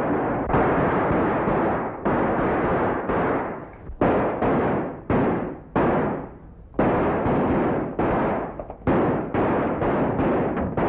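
A string of handgun shots, about a dozen at uneven intervals, each a sharp crack that dies away in a short echoing tail.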